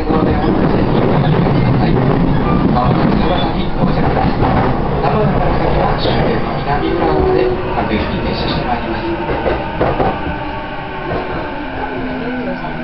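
Running noise inside a JR East E233 series 1000 electric commuter car braking into a station: a steady rumble of wheels on rail with clicks from the track, steady tones from the traction motors in the second half, and the noise easing near the end as the train slows.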